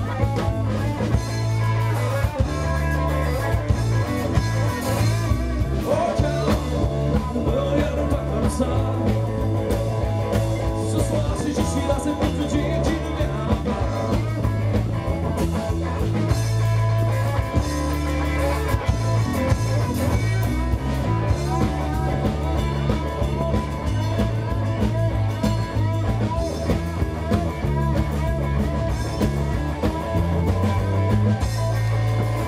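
Live rock-blues band playing a passage with guitar to the fore over a steady bass line.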